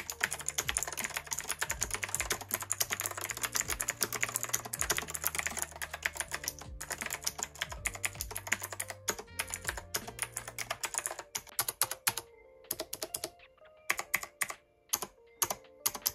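Rymek retro typewriter-style mechanical keyboard with clicky blue switches being typed on: a fast, dense run of keystroke clicks for about eleven seconds, then slower, spaced-out keystrokes near the end.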